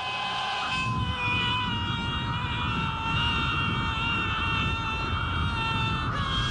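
Film soundtrack of a man falling through the air: a steady rushing-wind rumble, with several long sustained high tones held over it.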